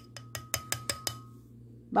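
Measuring spoon tapped quickly against a glass blender jar to knock ground nutmeg into the mix. About ten light clicks in the first second or so, with a faint ring from the glass that dies away soon after.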